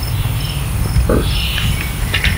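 Insects chirping faintly in short high notes over a steady low rumble, with one brief low sound about a second in.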